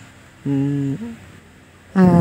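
A voice humming a held 'mmm' on one steady pitch, ending in a short lower dip. Another hum starts right at the end.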